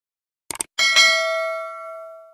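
Subscribe-animation sound effects: a quick double mouse click, then a bright notification-bell ding that rings with several clear tones and fades away over about a second and a half.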